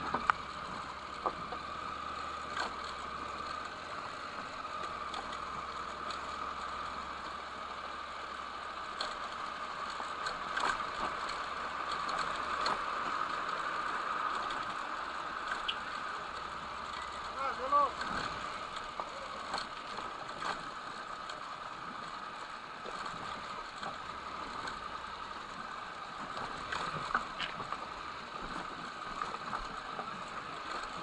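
Motorcycle riding slowly along the gravel ballast of a railway track: a steady engine drone with scattered clicks and knocks from the stones, and a brief shouted voice a little past the middle.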